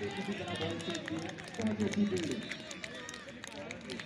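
Several people talking and calling out over one another outdoors, with scattered sharp knocks among the voices.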